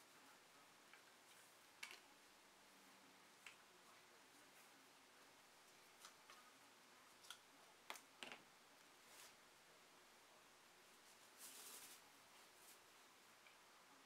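Near silence with a few faint scattered clicks and a brief soft rustle near the end: hands working the drawstring and rubber band of a cotton drawstring bag and opening it.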